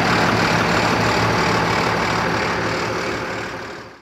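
Diesel truck engine idling steadily, fading out near the end.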